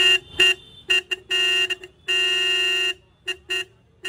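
Motorcycle pressure horn sounded in a string of blasts at one steady pitch: several short toots and two longer blasts, about half a second and nearly a second long.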